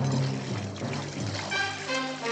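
Film score music over a bubbling, rushing water effect as an animated fish churns through the water.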